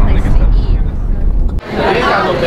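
Deep rumble inside a moving car, with muffled voices over it. About one and a half seconds in it cuts off sharply to the chatter of a crowded room.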